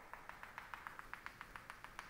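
Chalk tapping on a chalkboard in a fast, even run of faint ticks, about eight a second, as short dashes are drawn around a dashed circle.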